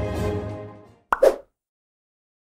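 Performance music fading out over the first second, then a sharp click and a short pitched blip lasting about a third of a second: the logo sound of a video end card.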